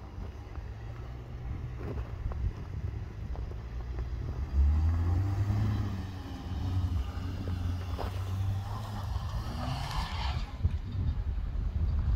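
SUV engine working as the car drives and climbs over snow and ice, its revs rising and falling, with a louder surge about four and a half seconds in. A brief hiss near ten seconds is typical of tyres on snow.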